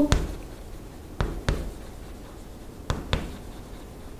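A few light taps and knocks, about five spread over four seconds with pauses between, such as chalk or a marker striking a board while writing.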